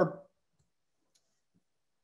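A man's voice trailing off at the end of a word, then near silence with one or two very faint clicks.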